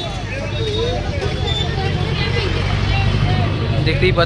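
Busy street noise: a motor vehicle engine running close by as a steady low rumble that grows a little louder toward the end, with a crowd chattering in the background.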